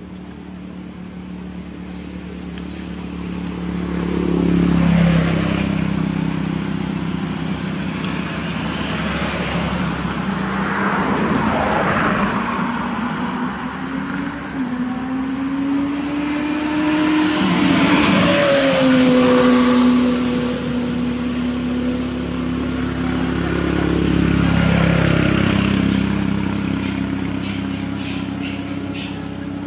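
Motor vehicle engines passing, the sound swelling and fading about four times, with engine tones that rise and fall in pitch.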